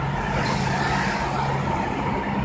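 Steady road and wind noise heard from inside a moving car on a highway, with a constant low engine drone under it.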